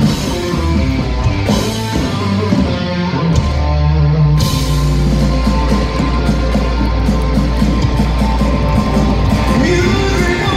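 Live rock power trio playing through a PA: electric bass, electric guitar and drum kit. The cymbals drop out for about a second around three seconds in, then the full band comes back in.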